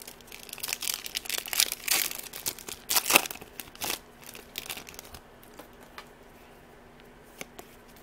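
Foil wrapper of a Yu-Gi-Oh! trading-card booster pack being crinkled and torn open, loudest about three seconds in. After that only a few light clicks and rustles as the cards are handled.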